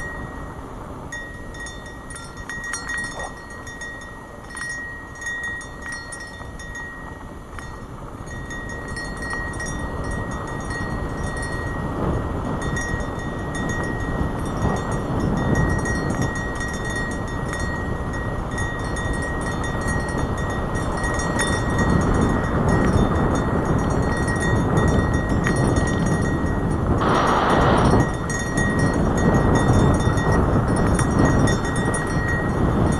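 Wind buffeting a helmet-mounted camera's microphone, mixed with tyres rolling on a dirt trail, getting louder as the ride speeds up. A faint steady high whine runs underneath, and a brief hiss comes near the end.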